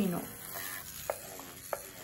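Paper tissue rustling and scraping as a tattoo needle cartridge is wiped by gloved hands, with a few light plastic clicks in the second half.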